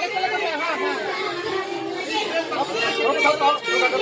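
Many people talking at once: a crowd's chatter with no single voice standing out.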